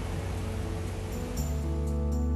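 Soft background music coming in about a second and a half in, with long held low notes and light high ticks, over a steady hiss of background noise.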